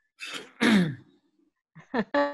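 A person clearing their throat: two short bursts in the first second, the second louder.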